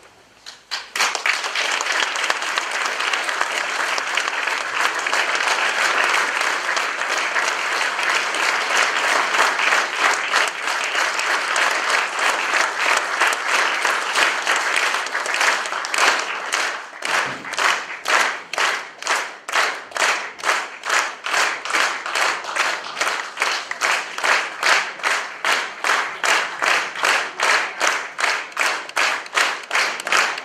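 Audience applause, starting about a second in and turning about halfway through into rhythmic clapping in unison, about two claps a second.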